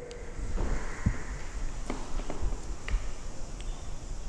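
Faint handling sounds and a few soft clicks over a low background rumble, from a hand-held laser pointer being worked and switched on.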